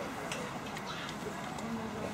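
Faint murmur of an outdoor audience chatting quietly, with a few light clicks in the first second; the band is not yet playing.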